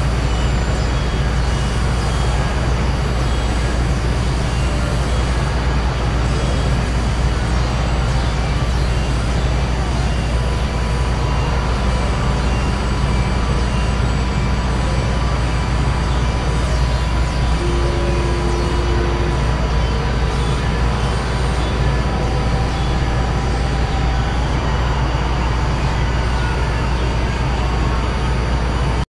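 Experimental electronic noise drone: a dense, steady low rumble under a hiss, with thin held tones coming and going, a high one through the middle and a brief lower one about two-thirds of the way in.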